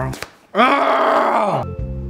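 A man's groan with his mouth full of a foam squishy toy, about a second long, rising then falling in pitch. Background music follows.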